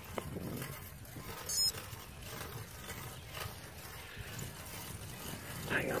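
Low steady rumble of wind and movement on the microphone, with a few faint knocks and a brief high chirping sound about a second and a half in. A man's voice starts at the very end.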